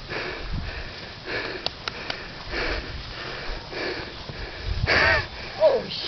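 A person breathing hard close to the microphone, a quick noisy breath about every second, with a louder, partly voiced gasp near the end.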